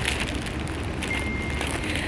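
Steady outdoor background noise with a low rumble, and a faint thin whistle-like tone for about half a second near the middle.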